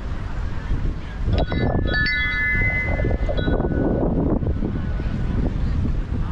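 A few chime strikes ringing out, beginning about a second and a half in and dying away over the next few seconds, with wind rumbling on the microphone throughout.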